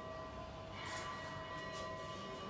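Faint, steady ringing tones over quiet room ambience, with a couple of soft brushing sounds about a second in and near the end.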